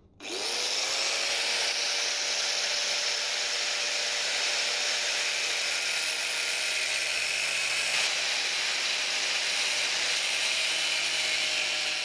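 Makita angle grinder spinning up with a quickly rising whine, then cutting a V-notch into 20 mm square steel tube: a steady high whine over a harsh grinding hiss.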